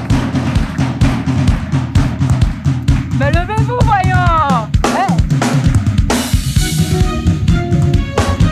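Live band music driven by a drum kit, with fast, dense kick and snare hits. A voice rises over it briefly in the middle, and a cymbal crash rings out about six seconds in.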